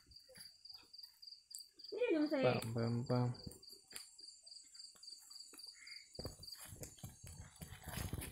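A cricket chirping in an even, high-pitched pulse of about four chirps a second, stopping about a second before the end. A man's voice sounds briefly about two seconds in and is the loudest thing, and scattered clicks and crackles come in over the last two seconds.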